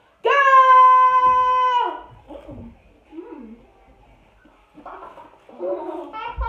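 A voice shouting one long, held "Go!" that lasts about a second and a half, the start signal of the countdown, followed by faint, scattered sounds and some voices near the end.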